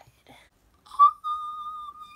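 A person whistling one high note that starts about a second in, holds steady, then slides down slightly as it ends.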